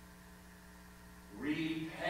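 Steady low electrical hum in a quiet pause, with a man's voice starting to speak about a second and a half in.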